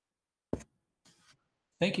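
A single short click about half a second in, then a faint rustle, before a man starts to speak near the end.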